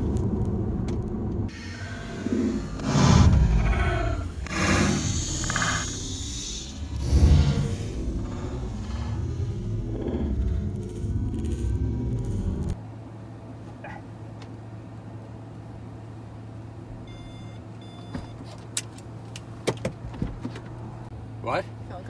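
Cabin noise inside a Tesla Model S P100D on the move: loud, uneven road and wind noise with heavy low bumps and several louder surges. About 13 seconds in it cuts off abruptly, leaving a quieter steady low hum with a few sharp clicks.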